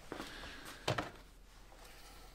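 Quiet room tone with one brief soft knock about a second in, as a plastic oil bottle and funnel are handled.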